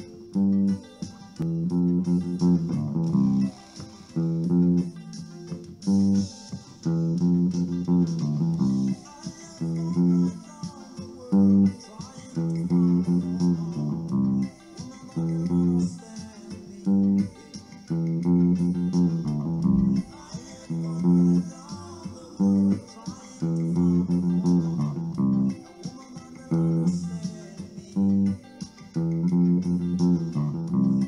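Electric bass guitar playing a reggae bassline in the key of C: plucked notes in a short phrase that repeats over and over.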